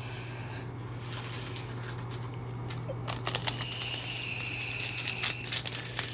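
Foil wrapper of a trading card pack crinkling and crackling as it is handled and torn open, the small crackles getting busier over the last few seconds.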